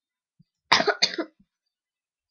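A person coughing twice in quick succession, loud and close, just before a second in.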